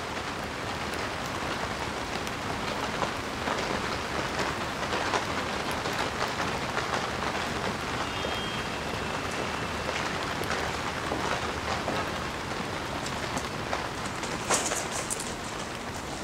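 Steady rain falling, an even hiss of drops on the pavement.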